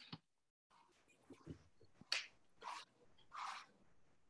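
Near-silent room tone over a video-call microphone, broken by a few faint clicks and then three short, breathy hisses in the second half.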